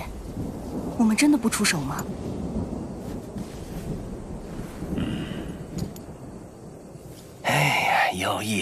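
A voice speaks briefly about a second in. A low, steady rumble then carries on until a louder voice with a sigh near the end.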